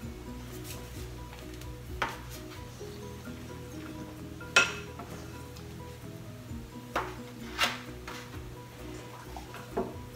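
A metal spoon clinking and scraping against a metal cookie sheet as mounds of cookie dough are slid off onto it: about five short, sharp clinks, the loudest a little before halfway. Soft background music plays throughout.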